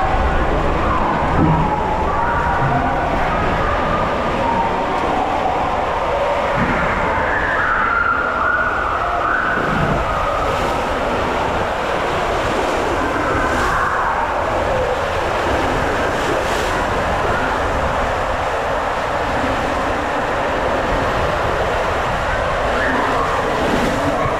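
Rider sliding down an enclosed plastic tube water slide: a loud, steady rush of water and body on the slide surface, echoing inside the tube. A wavering higher tone rises and falls over it in the first half.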